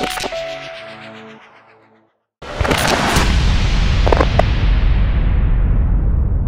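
Electronic intro music with a glitch stutter, fading out over about two seconds. After a brief silence comes a sudden loud hit with a long rumbling, hissing tail and a few short glitch crackles, a logo-reveal sound effect.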